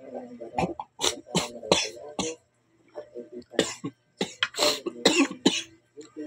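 A man coughing in two bouts of several coughs each, with a short pause between them.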